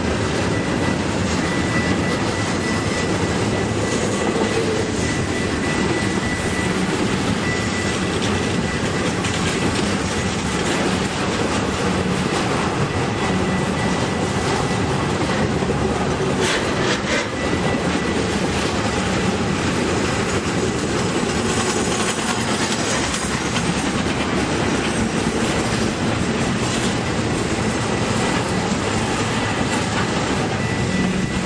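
Intermodal freight train of flatcars loaded with highway trailers rolling steadily past close by, its wheels running on the rails. A thin high squeal comes and goes, stronger in the first few seconds and again past the middle and near the end.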